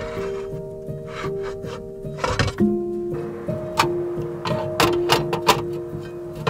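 Background music of held notes, over which come a series of sharp knocks and clinks as the metal parts of a portable mini stove are handled, its wire grill rack among them. The knocks come in a cluster in the second half.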